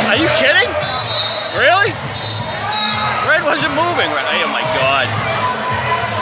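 Several voices shouting and calling over one another in a large hall, with two brief high steady tones a couple of seconds apart.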